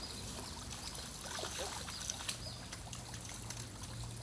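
Soft, steady trickling and lapping of pool water as a golden retriever paddles to the pool's edge and begins to climb out.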